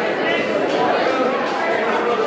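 Many people talking at once in a large room: steady, indistinct overlapping chatter.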